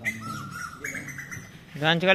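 Rose-ringed parakeet giving two thin whistled notes, the second higher than the first, then a loud voice breaks in near the end.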